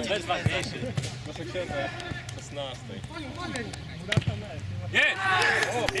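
A football being kicked: a few sharp thuds, one about half a second in, another at about a second and one after four seconds, amid men's voices calling out. A loud shout near the end.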